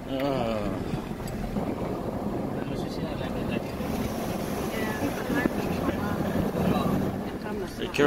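Steady road and engine noise heard from inside a moving car's cabin, with faint voices in the background.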